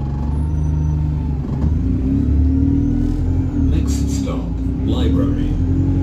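Double-decker bus engine running and pulling away, heard from inside the bus, its pitch rising a couple of seconds in. A voice speaks briefly near the end.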